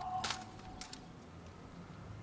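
A few sharp clicks and slaps of rifles being handled in drill by an honour guard at 'present arms', the first and loudest just after the shouted command dies away, then two lighter ones about a second in.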